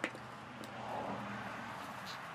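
A single sharp click of a plastic pump-top bottle being pressed to squirt silicone hair serum, followed by soft handling noise as the bottle is drawn back, over a steady low hum.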